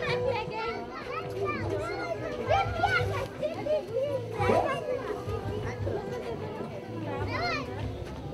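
Several voices of women and children talking and calling out over one another, with music playing in the background.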